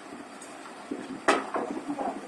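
A sharp clank a little over a second in, with a few lighter knocks around it, from the steel levers and mould parts of a QT4-24B semi-automatic block-making machine being worked by hand, over low background noise.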